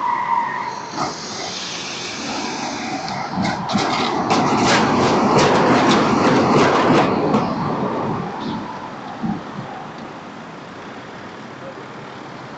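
Tram passing close by on street rails: its running noise builds, peaks about five to seven seconds in with a rapid run of clicks and rattles from the wheels on the track, then fades away. A short tone sounds at the very start.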